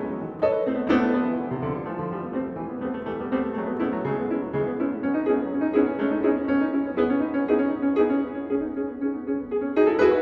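Steinway grand piano played solo in a fast, busy passage, a steady stream of short struck notes mostly in the middle register.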